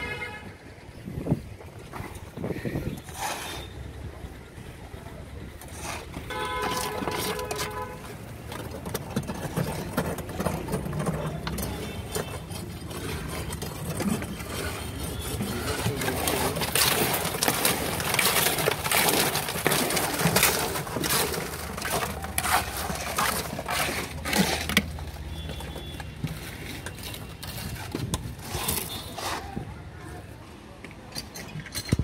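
Concrete mixer running steadily, with scraping and clattering of wet concrete being tipped and worked into steel column formwork, loudest in the middle stretch. A vehicle horn sounds for about a second and a half early on.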